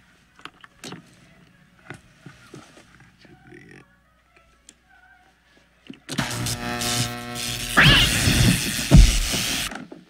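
A few faint clicks and rustles, then from about six seconds in a loud electrical hum and surge as a string of Christmas lights switches on. It swells and cuts off suddenly just before the end as the power fails and the lights go dark.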